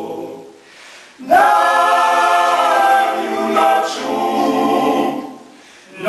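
Male klapa ensemble singing a cappella in close harmony. A held chord dies away, and after a short breath about a second in, the voices come in again loudly on a new phrase of sustained chords that fades out near the end.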